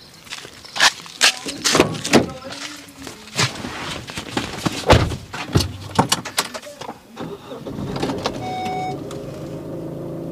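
Car engine running near the gate, settling into a steady hum over the last few seconds, with one short electronic beep. Before it comes a string of sharp clicks and knocks.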